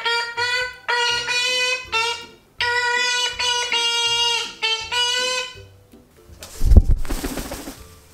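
A jaunty wordless tune of short, steady notes that stops about six seconds in. Near the end comes a loud burst of fluttering and buffeting as a green parrot flaps its wings and lands on her arm.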